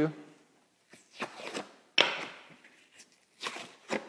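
Drywall gypsum snapping along scored cuts and being peeled off its paper face. There are a few short cracks and tearing rustles, the sharpest about two seconds in.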